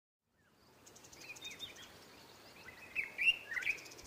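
Small birds chirping over faint outdoor background noise: short rising and falling calls, a few faint ones early and louder ones in the last second.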